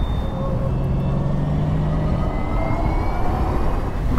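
Wind and road noise from riding an electric scooter at speed: a steady loud rush. A low hum runs through the first half, and a faint whine rises slowly in pitch through the middle.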